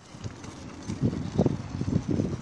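Footsteps on brick paving, a run of irregular low thumps starting about a second in, with wind noise on the microphone.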